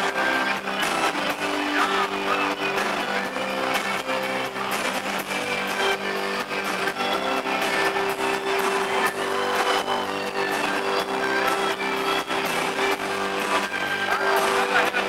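A live band playing, led by electric guitar, with sustained notes held over a steady accompaniment.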